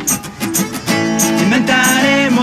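Acoustic guitar strummed in an instrumental gap between sung lines. The playing thins out briefly at the start and comes back in full about a second in.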